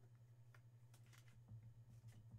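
Near silence: room tone with a steady low hum and a few faint, short clicks.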